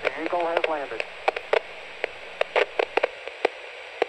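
Radio-transmission sound effect: steady static hiss with a brief wavering, garbled voice-like sound near the start and a dozen or so short blips scattered through.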